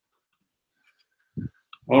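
Near silence for over a second, then a brief low thump and a man starting to speak near the end.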